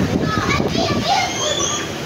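Children's high-pitched voices calling out and chattering, as children at play.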